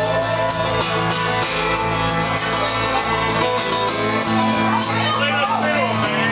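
Live band playing an instrumental passage with a steady beat: strummed acoustic guitar, fiddle and electric guitar over drums.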